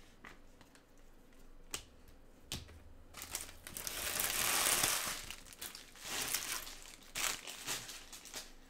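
Crumpled foil trading-card pack wrappers crinkling as a gloved hand gathers and crushes them. The crinkling is loudest for about two seconds in the middle, with a few sharp clicks before it and more crackles after.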